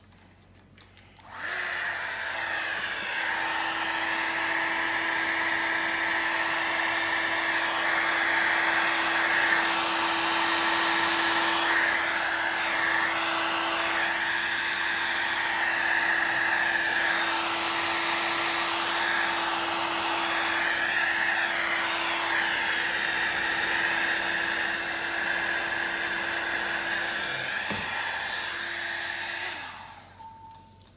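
Handheld hair dryer blowing steadily with a constant motor hum, pushing wet alcohol ink across the painting surface. It switches on about a second and a half in, dips briefly near the end, and cuts off just before the end.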